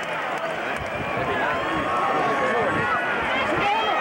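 Football stadium crowd: many voices talking and calling out at once, growing a little louder toward the end.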